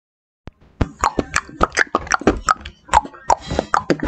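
A rapid series of short pops or clicks, about four or five a second, each a little different in pitch, starting just under a second in.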